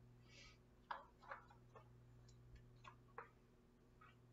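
Faint, scattered clicks and taps, about half a dozen, with a brief soft scrape near the start, over a steady low room hum.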